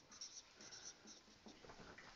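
Dry-erase marker writing on a whiteboard: faint, short strokes as letters are written.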